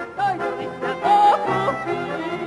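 A woman singing a Ukrainian folk song in full voice over folk-instrument accompaniment, with a held note about a second in that breaks sharply upward in a yodel-like flourish.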